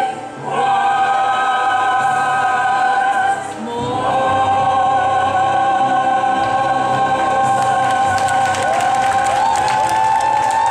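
A choir sings long sustained chords, breaking briefly twice and then holding a final chord. Applause breaks out under the held chord about seven and a half seconds in.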